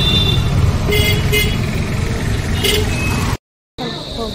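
Road traffic passing close, an auto-rickshaw among it, with engines running and several short horn toots. The sound cuts off abruptly shortly before the end.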